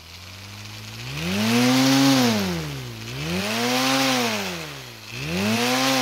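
Small electric motor driving a propeller, its hum and the whoosh of the blades speeding up about a second in, then falling and rising in pitch about every two seconds.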